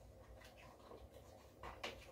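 Faint scratching and rustling of fingers working at a cardboard advent calendar box, with two short, slightly louder scuffs near the end.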